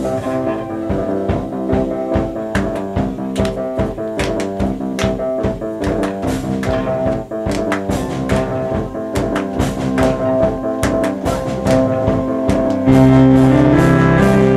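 Live indie band playing: keyboards, acoustic guitar and violin over a steady drum beat. About a second before the end the whole band comes in louder, with a heavy bass line.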